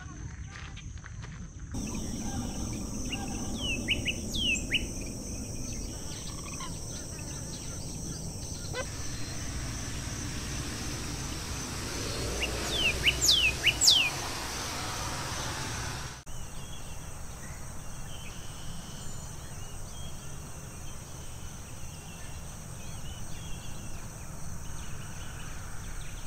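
Outdoor ambience of insects trilling steadily at a high pitch, with scattered short, sharp bird chirps. The loudest sound, about halfway through, is a quick run of high chip notes from a northern cardinal.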